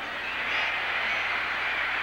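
Stadium crowd noise from an old television broadcast: a steady roar of many voices that swells about half a second in as the play gets under way.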